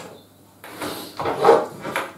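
A long metal straightedge sliding and scraping across a sheet of plywood, starting about half a second in.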